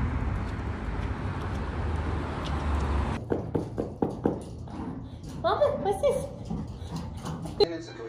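Steady street noise with a low rumble for about three seconds, then a sudden change to a quieter room: a few knocks and thumps, a brief vocal sound just before six seconds in, and a sharp click near the end.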